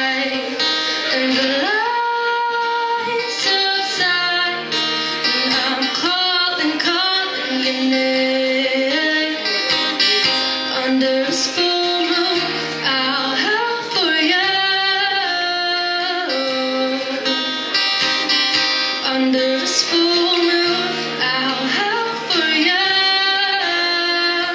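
A woman singing a song live, accompanying herself on acoustic guitar.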